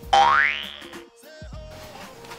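Comic sound effect: a quick rising, whistle-like pitch glide lasting about half a second, with short held musical tones, used as a comedy sting.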